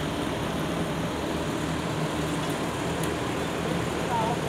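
Asphalt paver's diesel engine running steadily, a constant low drone.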